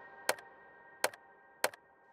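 Online case-opening reel ticking: three sharp, separate ticks a little under a second apart over a faint fading hum, as the spinning item reels wind down.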